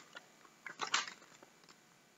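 Faint handling of a magazine and its plastic-wrapped packs: a few light clicks and a short rustle a little under a second in.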